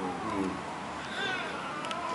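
Two short, high-pitched animal calls: the first falls in pitch, the second comes about a second later, higher and briefer.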